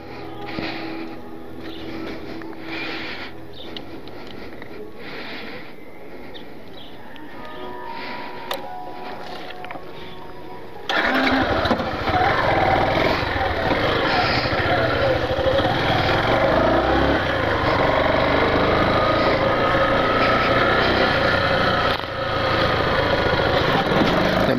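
Yamaha Factor 150 single-cylinder motorcycle riding, engine running with wind noise on the rider's camera. It comes in suddenly about halfway through, after a quieter first half.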